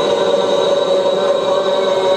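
A congregation of men's voices chanting in unison, holding one long steady note, with a faint thin high tone above it.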